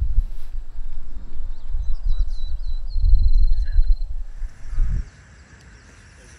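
Wind buffeting an outdoor microphone in gusty low rumbles, with a faint high chirping trill between two and four seconds in. About five seconds in the sound cuts abruptly to a much quieter, even field background with a faint steady high tone.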